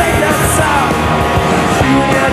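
Loud live punk rock: a band playing electric guitars, bass and drums, with sung vocals.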